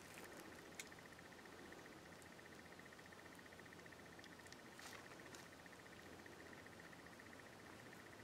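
Near silence, with a faint steady high hum and a few faint ticks.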